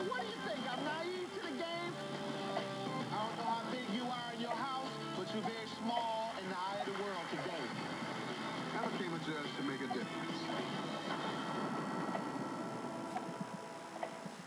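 Television audio playing music with voices over it.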